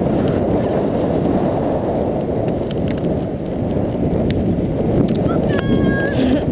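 Steady rumble of a blokart rolling fast over beach sand, wind and frame vibration picked up through the camera mount, with scattered small knocks. Near the end a brief high-pitched tone cuts in.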